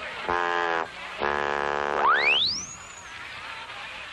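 Cartoon sound effects: short steady horn-like blasts, the last one longest, then a quick rising whistle that climbs very high and dips slightly at the top, a zip-off effect as the character runs away.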